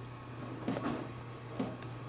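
A few faint light ticks of a wire inoculating loop against a glass microscope slide as bacteria are spread in a drop of water, over a steady low hum.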